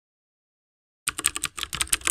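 Computer keyboard typing sound effect: a quick run of about ten keystrokes, starting about a second in and lasting about a second.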